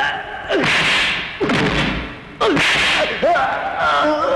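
Dubbed film fight sound effects: three swishing blows in quick succession, with sliding shouts and yells of effort between and over them.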